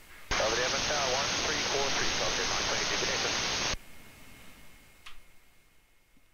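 VHF airband AM radio transmission played through a software-defined radio. The squelch opens suddenly a moment in: a voice buried in hiss and static for about three and a half seconds, then it cuts off abruptly.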